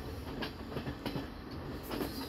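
Passenger train running along the track, heard from inside the carriage: a steady rumble with a few faint knocks.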